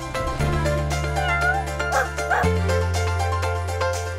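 Background music with a steady bass line, and a cat meowing over it a few times between about one and two and a half seconds in.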